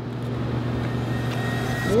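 A steady low rumble with a hiss over it that swells gradually louder, a build-up sound effect under a tasting countdown.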